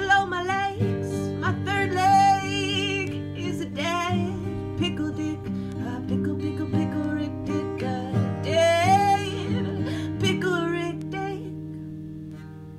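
A woman singing drawn-out notes with vibrato over a strummed acoustic guitar. The singing stops about ten seconds in and the guitar rings on, fading, as the song ends.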